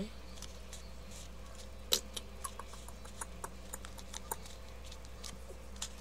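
Light, scattered clicks and ticks of metal tweezers and long fingernails picking at a plastic sheet of nail stickers, with one sharper click about two seconds in, over a faint steady low hum.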